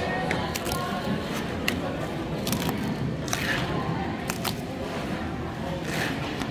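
Paper pull-tab tickets being opened by hand: a quick series of short, sharp paper snaps and rips as the tabs are pulled back, over the chatter of a room full of people.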